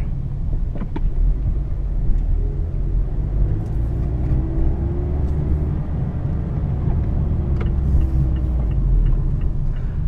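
Inside the cabin of a 2017 Mazda Miata RF on the move: a steady low drone of the four-cylinder engine and road rumble, with a faint engine note that rises in pitch a few seconds in and again near the end, and a couple of light clicks.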